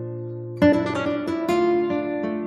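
Acoustic guitar music. A chord is strummed a little over half a second in, the loudest moment, and another about a second later, with the notes ringing on between them.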